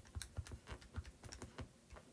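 Faint, quick, irregular tapping of keys, about a dozen presses in under two seconds: a calculation being typed in.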